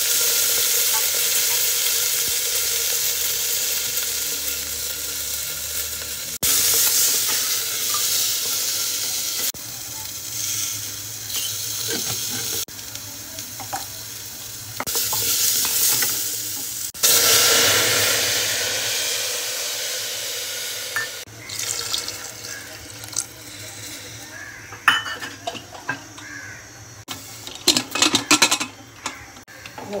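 Moringa drumstick pieces sizzling in hot ghee in an aluminium pressure cooker as a wooden spatula stirs them, in several stretches that start and stop abruptly. In the last few seconds the sizzle is quieter, and sharp metal clicks and clanks come as the cooker's lid is fitted.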